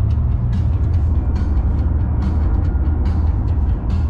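Steady low road and engine rumble inside a car's cabin at motorway speed, with music with a steady beat playing over it.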